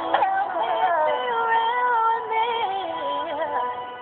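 A recorded song playing back: a woman's sung vocal line over a held backing chord. The voice stops about three and a half seconds in while the chord rings on.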